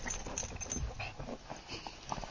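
Two small dogs play-fighting on carpet: irregular scuffling, with jaws snapping and mouthing at each other.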